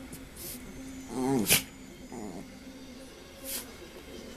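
Small dogs play-fighting: a wavering growl that falls in pitch about a second in, cut off by a sharp click, then a shorter falling growl. A brief scuffing noise comes near the end.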